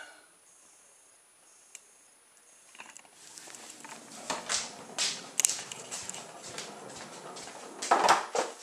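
A home-made cardboard rubber-band car, with cardboard wheels, rolls almost silently across a wooden parquet floor for the first few seconds. Then come a patter of footsteps and rustling knocks on the wooden floor as the car is followed, and a louder knock near the end.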